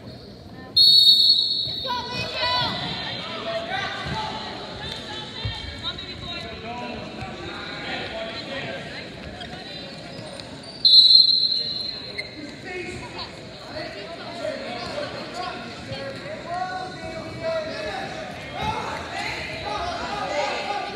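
Referee's whistle blown twice in a gym: a shrill blast about a second in and another about halfway through, each lasting about a second. In between, spectators shout and call out.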